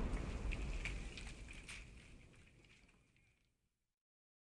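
Low rumble with crackling, the tail of a fiery explosion sound, dying away and fading out about two seconds in, then silence.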